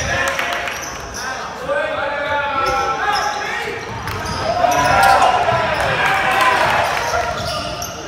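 Game sound in a gymnasium during a basketball game: voices calling out and shouting across the court, with a basketball bouncing on the hardwood floor. The shouting swells twice, about two seconds in and again around the middle.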